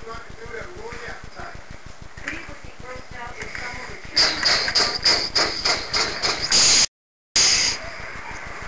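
A battery-powered toy train's motor and gears running, a loud rapid clicking rattle with a high whine that starts about halfway through and cuts out briefly near the end. Faint background voices before it.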